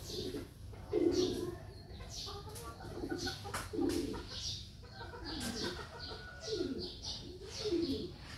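Birds calling: a short low call repeated about once a second, several of them falling in pitch, with higher chirps scattered over them.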